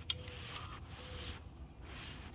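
A single sharp tap just after the start, with soft rustling around it: a cat's paw and claws moving against a window and its sill.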